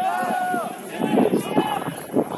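Voices of football players and spectators shouting across the pitch: a drawn-out call at the start, then short, loud bursts of shouting.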